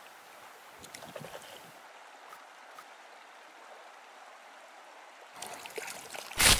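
Faint, steady wash of water lapping at a lake bank, with a few soft clicks about a second in. Louder rustling movement starts near the end.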